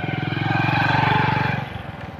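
Motorcycle engine running as the bike passes close by: it grows louder to about a second in, then fades as it moves away.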